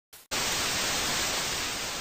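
Television static hiss, the white noise of a screen with no signal. It starts just after a brief faint blip and holds steady, fading slightly.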